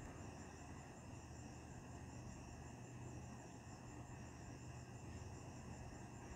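Faint, steady background noise: several high-pitched whining tones over a low hum, unchanging throughout.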